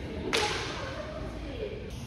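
A single sharp crack about a third of a second in, dying away within a fraction of a second, over faint background room noise.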